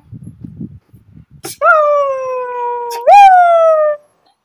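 A man's mock crying, in play: two long, loud wailing cries, the first sliding slowly down in pitch, the second jumping up and then sliding down again. Before them, for about the first second and a half, there is only soft low rumbling.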